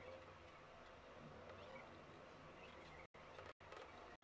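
Near silence: faint room tone, broken by a couple of brief drops to dead silence near the end.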